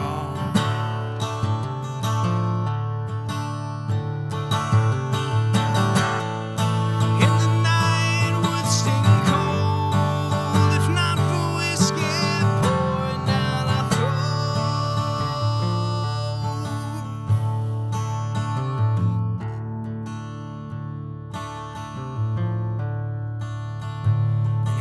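Acoustic guitar strummed in an instrumental passage, chords ringing on without a voice.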